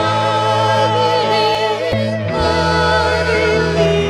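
Choir singing over steady held low notes, the bass changing about two seconds in.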